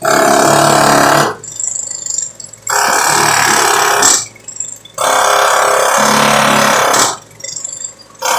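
A loud power tool running in three bursts, each one to two seconds long, with pauses of about a second between them.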